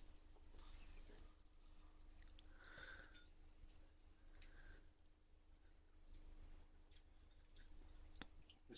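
Near silence: room tone with a faint steady hum and a few faint scattered clicks.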